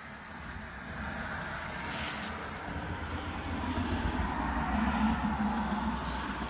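A low, steady rumble that builds over the first second and holds, with a brief crinkle of the sparklers' plastic wrapping about two seconds in.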